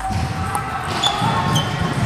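Busy table tennis hall: background voices with table tennis balls clicking off bats and tables.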